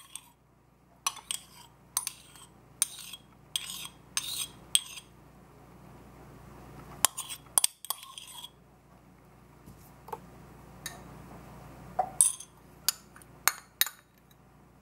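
A metal spoon scraping and clinking against the inside of a small clay pot as it is scraped out. There is a quick run of about seven clinks at the start, then more spread-out clinks and scrapes.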